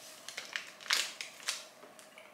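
Someone chewing a soft, chewy marshmallow sweet: a few short clicks from the mouth, the loudest about a second in.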